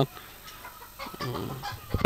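White broiler chickens clucking in the background, low and scattered, a little busier from about a second in.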